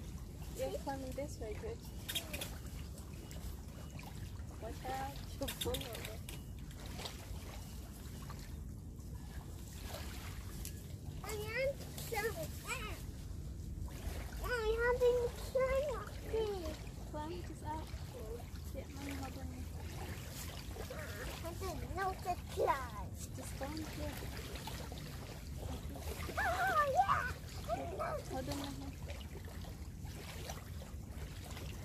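Children's voices calling and chattering on and off as they climb, over a steady low outdoor rumble of wind and water.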